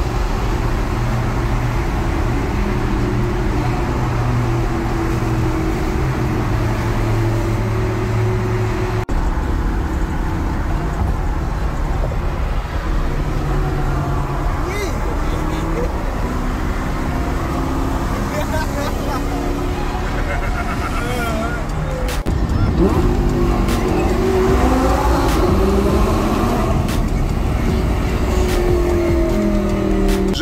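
Lamborghini Gallardo's V10 engine running at cruising speed, heard from inside the cabin with tyre and road noise. Past two-thirds of the way through it gets louder, its pitch rising and falling as the engine revs.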